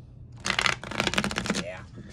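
Riffle shuffle of a thin-cardstock tarot deck: a rapid patter of cards flicking off the thumbs, starting about half a second in and lasting about a second.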